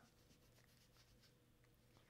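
Near silence, with the faint scratchy rubbing of an ink blending tool worked back and forth over cardstock, over a low steady hum.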